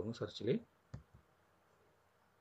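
A man speaks briefly, then a sharp click sounds about a second in, followed by a fainter second click, as the YouTube search box is clicked or typed into on the computer.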